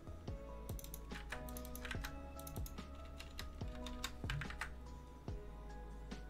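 Typing on a computer keyboard, with clicks coming in short clusters, over quiet background music.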